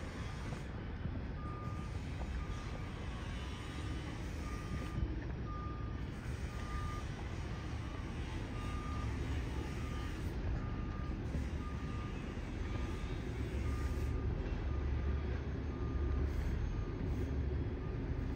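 A reversing alarm beeping at one steady pitch, roughly every half second to a second, over a low rumble that grows louder near the end.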